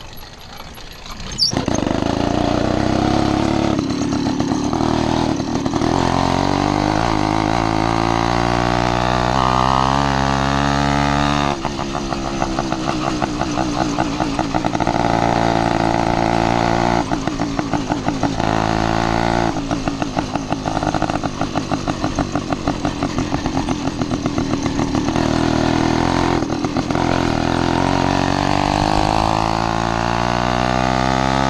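Zeda 80cc two-stroke motorized-bicycle kit engine running under way, coming in suddenly about a second and a half in. Its pitch rises as it accelerates, falls off abruptly about twelve seconds in, then climbs and wavers again with the throttle.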